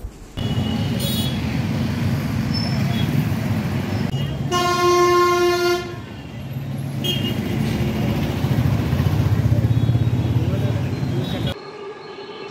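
Street traffic with motorcycles and cars running past. A vehicle horn sounds once, held for over a second, about four and a half seconds in.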